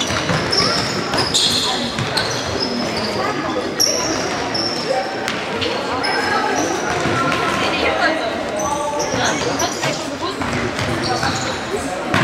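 Indoor football on a sports-hall floor: shoes squeaking and the ball knocking as it is kicked and bounces, over a steady murmur of spectators' voices in a reverberant hall.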